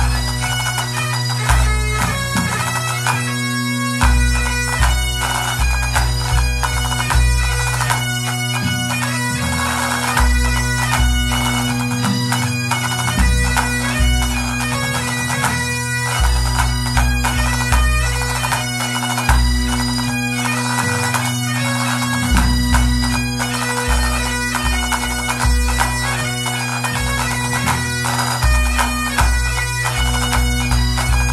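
Pipe band of Great Highland bagpipes playing a tune over a steady drone, with the chanter melody moving above it and a low drum beat underneath.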